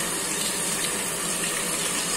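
A seasoned beef steak sizzling steadily in hot oil in a frying pan.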